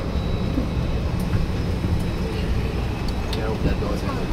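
Steady low hum of a parked airliner's cabin during boarding, with faint passenger voices and a few light clicks.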